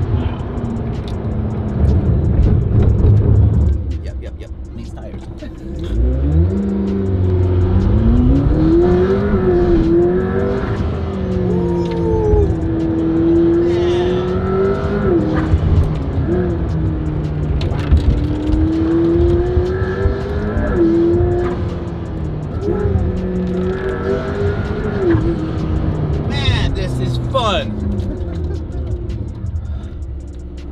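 McLaren P1's twin-turbo V8 accelerating hard through the gears, heard from inside the cabin. The engine note climbs in pitch and drops back at each upshift, several times in a row, after a brief lull near the start.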